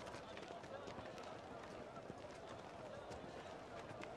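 Faint crowd ambience: indistinct background voices with scattered light steps and taps.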